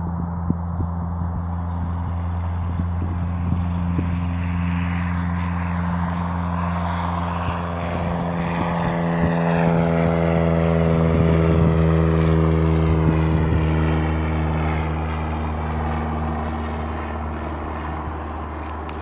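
Cessna 172's piston engine and propeller at take-off power as the plane lifts off and climbs past. It grows louder to a peak about twelve seconds in, its pitch drops as it goes by, then it begins to fade.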